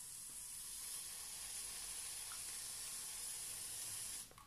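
Aerosol can of Figaro shaving foam spraying in one steady, unbroken hiss as foam is let out in ribbons; the can is nearly emptied by it.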